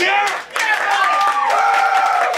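Small audience clapping and cheering at the end of a song, with a couple of drawn-out whoops starting about half a second in and overlapping.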